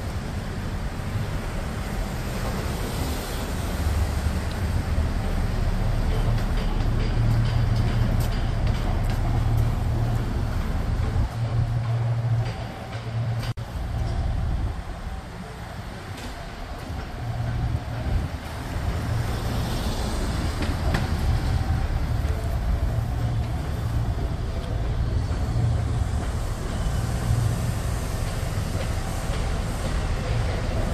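Low, steady rumble of a crawler crane's diesel engine running. It drops off for a few seconds about twelve seconds in.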